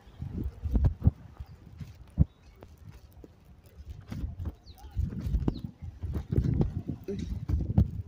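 Footsteps on a brick sidewalk, a series of irregular sharp taps, with a low rumble that swells and fades on the microphone between them, loudest in the second half.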